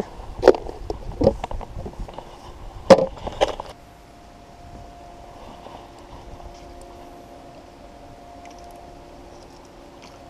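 A few sharp knocks and clatters in the first four seconds, the loudest about three seconds in, followed by a faint steady hum.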